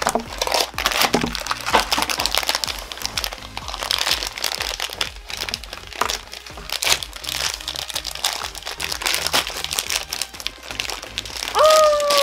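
Foil blind-bag wrappers being crinkled and torn open by hand: a dense run of quick, irregular crackles, with background music underneath.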